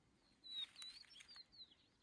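Bird calling faintly: a quick run of high chirps and slurred whistled notes, some falling and some rising, starting about half a second in and lasting just over a second.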